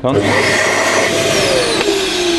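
A built-in vacuum cleaner in a camper van switched on: a loud, steady suction rush that starts suddenly, with a motor whine that slowly falls in pitch.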